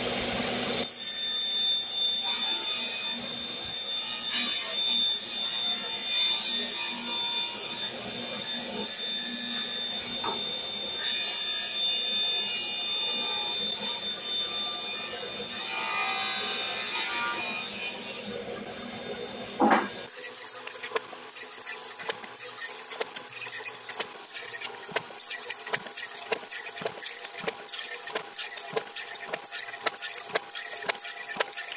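Ridgid table saw running with the dust collector on, ripping quarter-inch plywood underlayment into strips: a steady high whine with noise. About twenty seconds in, the saw sound stops with a sharp click and gives way to an even, rhythmic clicking of about two beats a second.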